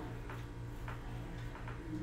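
Faint ticking over a low hum that pulses about four times a second: quiet room tone.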